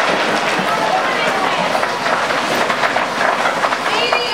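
Loose material tipped out of boxes into a tall enclosure, a steady rattling rush with voices in the background.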